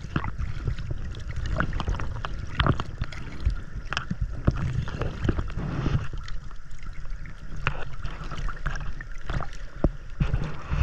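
Water sloshing and splashing around a camera held at the waterline, with irregular splashes from swimmers' finned feet kicking at the surface just ahead.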